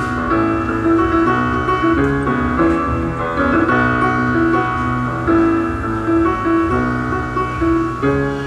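Solo jazz piano played live on a Yamaha grand piano: a continuous flow of chords and melody, with notes and chords changing every half second or so.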